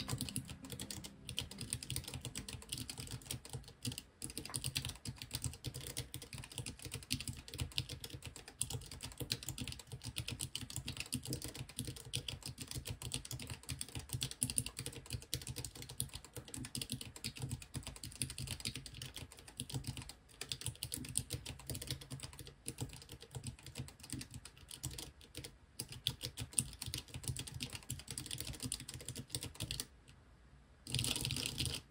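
Fast, continuous typing on a Ferris Sweep 34-key split keyboard, at about 77 words per minute: a dense run of key clicks with a few brief pauses, stopping at the very end.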